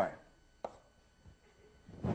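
A single sharp tap of chalk against a blackboard, then a brief noisy scuff near the end.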